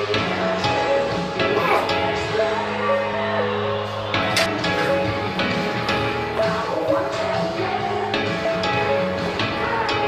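Background music: an edited-in song with a steady beat and held melodic tones.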